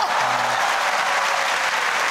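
Theatre audience applauding steadily, a dense wash of many hands clapping.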